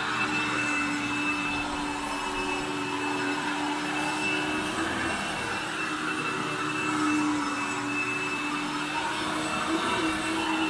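Upright vacuum cleaner running steadily as it is pushed over carpet to pick up dry soil, a constant motor hum and a higher whine over the rush of air.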